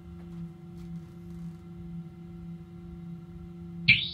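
A steady low electronic tone held through the amplifiers of an electric guitar and effects rig, with a slight pulse; a sudden loud, high chirp cuts in at the very end.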